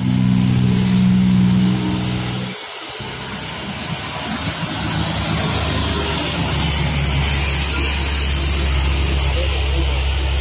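A steady drone breaks off about two and a half seconds in. Then the Hino 500 truck's diesel engine grows louder as the truck pulls up the climb towards the microphone, and holds steady near the end.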